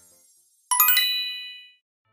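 A bright chime sound effect: a quick run of high bell-like dings about two-thirds of a second in, ringing out and fading over about a second, marking a scene transition.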